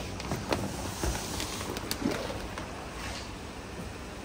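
Footsteps on paving slabs and a large plastic fish bag being carried and handled, with a few short knocks, over a steady low hum.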